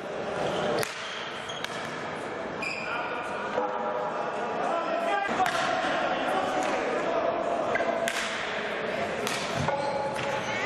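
Indoor hockey play in a sports hall: sharp knocks of sticks striking the ball, several times, with the hall's echo, over players' calls and shouts.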